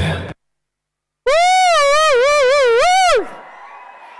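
Loud dance music with a heavy bass cuts off abruptly, followed by about a second of dead silence. Then a high voice over the PA holds one long, drawn-out call for about two seconds, its pitch wavering up and down.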